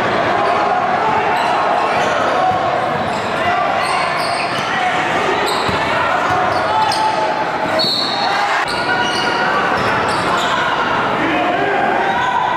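Gymnasium game sound: a basketball being dribbled on a hardwood floor under a steady din of spectators' voices, echoing in a large hall.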